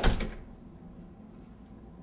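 A door banging once as it is jolted in a struggle over it, the knock ringing out briefly.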